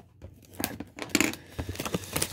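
Crinkling and rustling of plastic card-pack packaging being handled: a string of short, irregular scratchy crinkles starting about half a second in.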